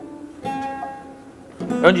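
A single plucked note on a bağlama (Turkish long-necked lute), ringing and fading over about a second; a man's voice starts near the end.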